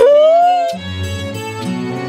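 A drawn-out wailing cry that rises in pitch and stops just under a second in, over background music with sustained low string notes.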